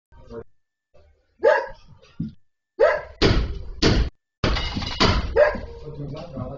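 A dog barking several times, with two longer, louder noisy stretches about three and four and a half seconds in.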